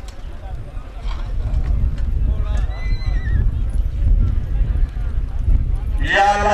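Horses on a dirt field: one horse whinnies, a wavering call about three seconds in, over a steady low rumble and a few faint hoof knocks.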